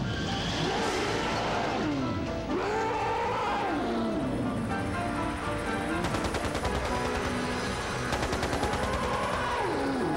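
Dramatic music under the King Kong animatronic's roars, long howls that rise and fall, about three of them. A rapid rattle of sharp cracks runs through the middle.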